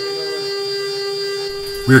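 CNC router spindle at full speed with a steady high whine and a stack of overtones, its end mill cutting a domed aluminium part.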